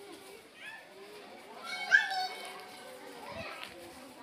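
Background voices of people around the temple grounds, with a loud, high child's call rising in pitch about two seconds in.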